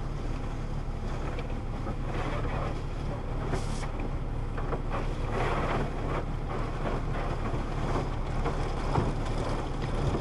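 Water and soap spraying onto a car's windshield in an automatic car wash, heard from inside the car's cabin, over a steady low hum.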